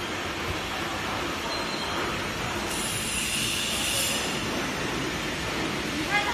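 HY-1300ZST PLC-controlled paper slitter-rewinder running, a kraft paper web travelling over its rollers: a steady, even mechanical noise, with a faint high whine coming in briefly about three seconds in.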